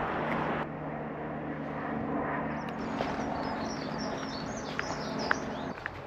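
Outdoor ambience: small birds chirping over a steady low hum, with a few sharp clicks near the end. A rushing noise cuts off abruptly about half a second in.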